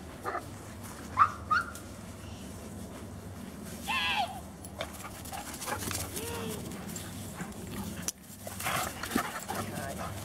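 Dogs giving short barks and yips, the two loudest a little after a second in, then a longer whining call around four seconds in.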